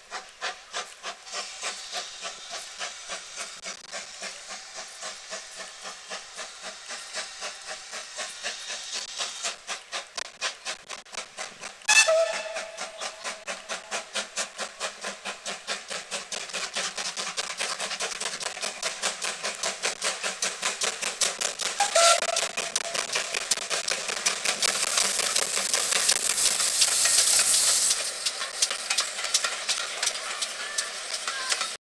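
GWR Manor-class 4-6-0 No. 7812 Erlestoke Manor, a two-cylinder steam locomotive, pulling away under load with a steady rhythm of exhaust beats. Two short whistle blasts sound about twelve and twenty-two seconds in, and a loud steam hiss rises for a few seconds near the end as the engine draws close.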